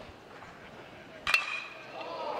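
A metal baseball bat striking a pitched ball once, about a second and a half in: a sharp metallic ping that rings on briefly. The ball is hit hard and carries to the deepest part of the park.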